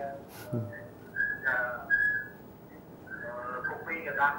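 Two short, high whistle-like tones, one about a second in and one about two seconds in, with a snatch of speaking voice between them; speech resumes near the end.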